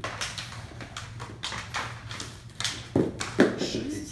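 Practice butterfly swords clacking against each other in a quick, irregular series of knocks as two people spar. Near the end there is a short vocal exclamation.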